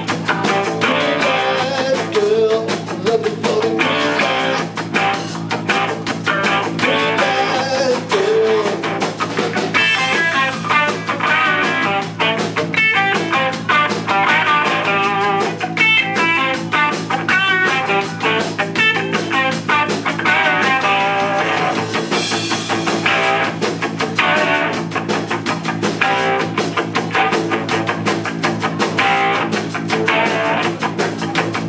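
Live blues-rock band playing an instrumental passage without vocals: a Gretsch 6120 hollow-body electric guitar playing lead over electric bass and a drum kit.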